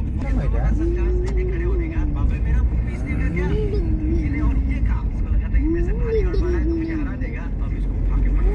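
Steady low rumble of a car's engine and tyres heard from inside the cabin while driving. Over it a voice holds long drawn-out tones that rise and fall every second or two.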